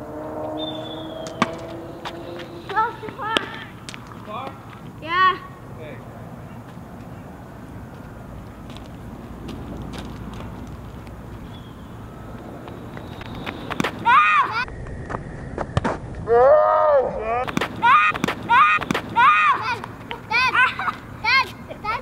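Children's voices calling and shouting from a distance, coming thick and fast in the second half, over steady outdoor background noise with a few sharp clicks.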